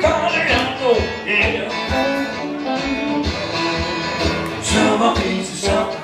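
Live acoustic guitar music in a blues style, with a steady low beat about twice a second under the playing.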